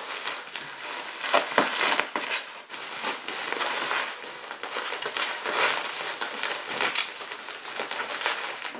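Plastic bubble wrap being handled and pulled apart by hand, crinkling and crackling in irregular bursts with a few sharper crackles.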